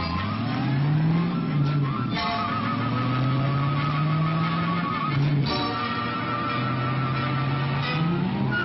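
Cartoon music score over a low, engine-like revving sound effect for a character's running dash. Its pitch rises and falls, then holds steady, with sudden sharp accents about two seconds and five and a half seconds in.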